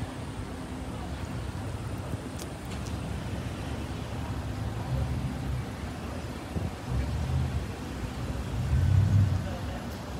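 Street traffic: the engines of a slow, congested line of cars make a low rumble that swells a few times, loudest near the end.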